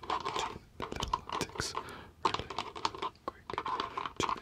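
Fingertips tapping fast and irregularly close to the microphone: quick runs of sharp taps broken by a few brief pauses.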